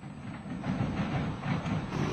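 A low, uneven rumble with irregular heavy pulses.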